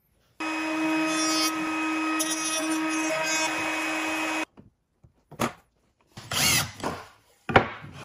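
Table-mounted wood router running steadily for about four seconds, starting and stopping abruptly, its pitch dipping briefly midway as the bit takes load in the cut. Then come several brief knocks and scrapes of wood being handled.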